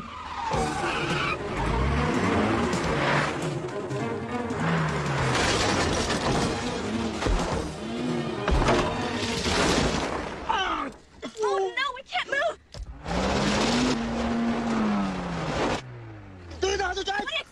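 Mitsubishi Lancer Evolution IV's turbocharged four-cylinder engine revving hard, its pitch rising and falling again and again with the throttle and gear changes. Tyres skid and scrabble over gravel and dirt, with a few thumps as the car lands over mounds.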